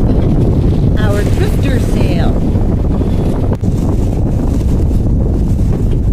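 Steady wind noise on a phone's microphone aboard a sailing boat, with a brief stretch of indistinct voice about a second in.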